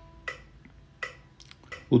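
An open string of a nylon-string classical guitar, plucked with the ring (a) finger and held for four beats, rings out and dies away about halfway through. A soft click keeps the beat about every three quarters of a second.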